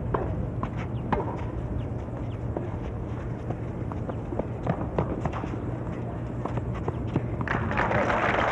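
On-court sound of a tennis rally on a hard court: scattered sharp ball strikes and running footsteps over a steady low hum, the hiss growing louder near the end.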